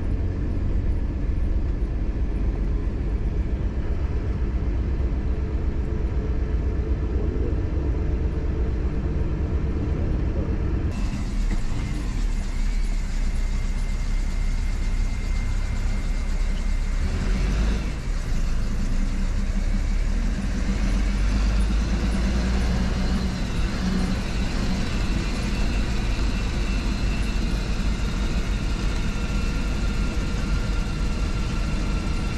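Ashok Leyland sleeper bus engine and road noise heard from inside the driver's cabin, a steady low drone. About eleven seconds in the sound changes abruptly, turning thinner and hissier.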